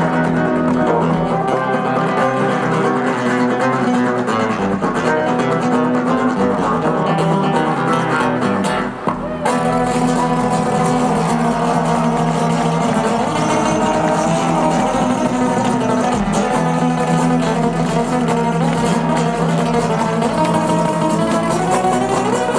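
Two acoustic guitars played live through a concert PA, a fast rhythmic duet with a short break about nine seconds in before the playing carries on.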